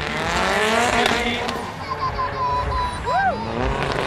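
Drift car's engine revving, rising in pitch as it slides, then a long wavering tire squeal through the middle and a short rising-and-falling squeal about three seconds in.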